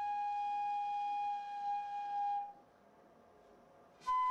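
Instrumental music: a single long, steady lead note on a flute-like wind sound, held without vibrato and ending about two and a half seconds in.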